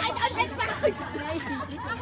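Several women chattering in the background, voices overlapping at a moderate level.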